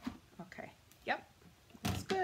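Light clicks and knocks of plastic cutting plates moving through a Big Shot die-cutting machine, with one louder knock near the end.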